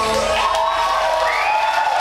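Live electronic music ending: the held synth chord and bass die away about half a second in. The crowd cheers and whoops over the last ringing notes.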